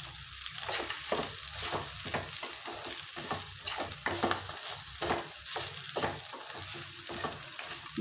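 Mutton pieces and sliced onions sizzling in a nonstick pan while a wooden spatula stirs in red chilli powder, scraping across the pan in quick, irregular strokes, about two or three a second.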